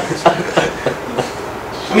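Footsteps across the floor: four light steps, about three a second, in the first second or so.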